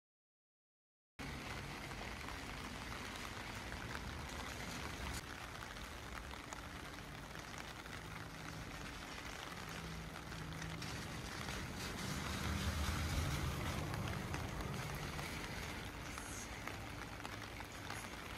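Outdoor street ambience starting about a second in: a steady wash of noise with the low hum of passing traffic, which swells about two thirds of the way through.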